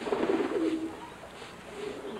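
A bird cooing: one low, wavering coo in the first second, and a fainter one near the end.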